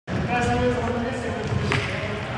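A single thud of the futsal ball in play on a hardwood gym floor, about three-quarters of the way through.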